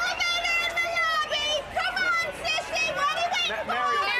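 A woman yelling taunts in a high-pitched voice, several shouted phrases one after another.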